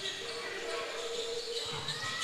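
Faint sounds of a basketball game heard from the court in a large gym: a basketball being dribbled, with a low murmur from the crowd.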